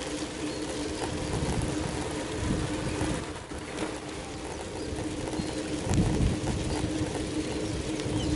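Wind rumbling on the microphone of a moving bicycle, coming in gusts, over a steady low hum, as a minivan passes close alongside. A few faint bird chirps.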